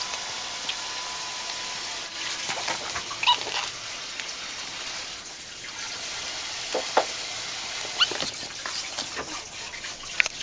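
Two ferrets wrestling, one mounting the other and biting at its neck, their bodies scuffling over a fleece mat and blanket. A few brief sharp sounds come about three, seven and eight seconds in.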